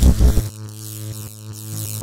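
Electric-shock sound effect: a loud buzzing zap that cuts off about half a second in, followed by a steady low electrical hum.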